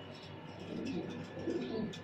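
Domestic pigeons cooing: a low, bubbling coo swells up a little under a second in and fades out near the end.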